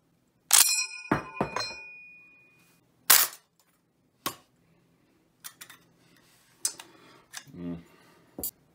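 A steel en bloc clip dropping out of the bottom of a bolt-action rifle's magazine, striking with a bright metallic ring about half a second in and clinking a few more times as it settles. Single clicks follow, then a run of lighter clicks from handling the rifle's action, and a dull thump near the end.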